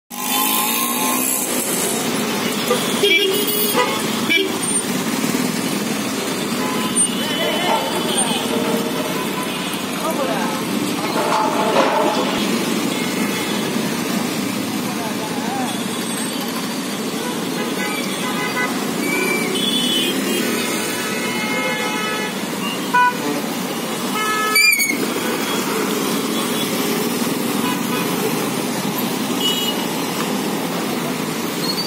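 Jammed road traffic: vehicle engines running in a steady din, with repeated horn honks that cluster into several overlapping horns about twenty seconds in. A few short, sharp sounds stand out, the loudest near the end.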